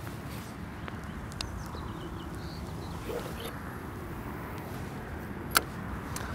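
Quiet, steady outdoor background rush, with a few faint ticks and one sharp click near the end.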